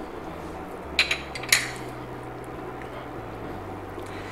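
A spatula stirring thick peanut sauce in a pan, with a few short knocks and scrapes against the pan about a second in and again about half a second later. A faint low hum runs underneath.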